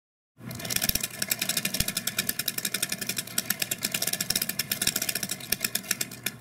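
Hand-cranked split-flap sign: its flap cards snap over one after another in a fast, continuous run of clicks.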